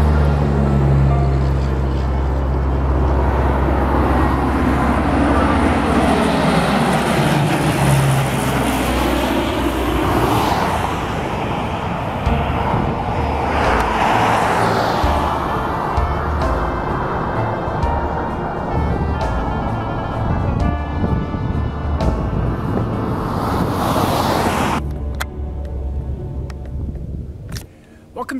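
Lockheed C-130 Hercules, four turboprop engines, droning loudly as it flies low overhead on approach, the pitch sweeping down as it passes. The sound drops away abruptly near the end.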